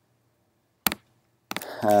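A single sharp computer click about a second in, with a couple of lighter clicks after it. Then a man starts to speak near the end.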